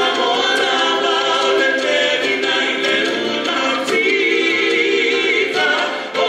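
A group of live singers performing a Samoan song together, holding long notes that move to a new pitch every second or so, with a few light percussive hits underneath.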